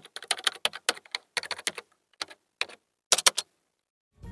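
Computer keyboard typing sound: a quick, uneven run of key clicks with a few short pauses, stopping about three and a half seconds in.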